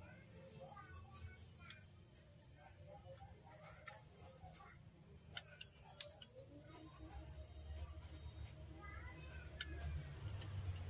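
Quiet background with a low hum and faint distant voices, broken by a few sharp clicks between about five and six seconds in, the loudest near six seconds: the rotary selector dial of a Fluke 115 digital multimeter being turned.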